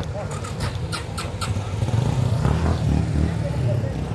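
Runners' shoes slapping on asphalt, about three steps a second, over the low running of a motorcycle engine that grows louder about halfway through, with spectators' voices around.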